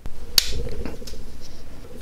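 A single sharp click about half a second in as a pressure flake snaps off the edge of an opal arrowhead blank under a hand-held pressure flaker.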